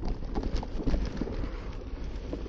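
Mountain bike rolling over a bumpy dirt singletrack: tyres crunching on the dirt with irregular light clicks and rattles from the bike over small bumps, over a steady low rumble.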